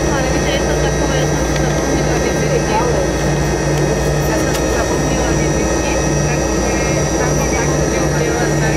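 Yakovlev Yak-40's three Ivchenko AI-25 turbofan engines running at low power while the aircraft taxis, heard inside the cabin: a steady high whine over a low rumble, with a low hum that pulses about once a second.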